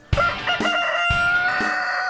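A rooster crowing once: a few short rising notes, then one long held cock-a-doodle-doo note that breaks off near the end. Just before it comes a single drum beat from the intro music.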